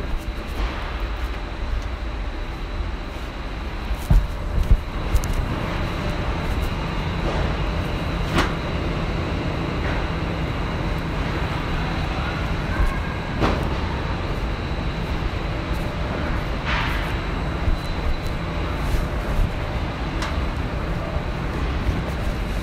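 Factory machinery running with a steady low rumble and a faint high whine, with a few sharp knocks scattered through it.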